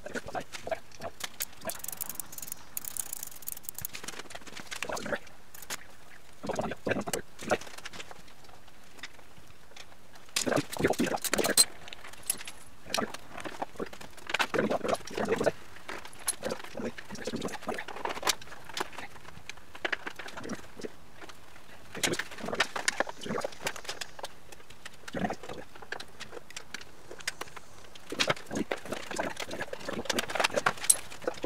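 Hand tools and metal parts clinking and rattling in irregular bursts as the carburetors are unbolted and worked loose from a Honda Sabre V4 motorcycle, with the loudest clatter a little before halfway.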